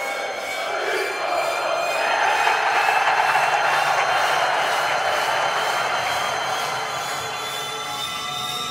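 A football stadium crowd cheering, swelling about two seconds in, under electronic music made of long held tones that rise slowly in pitch.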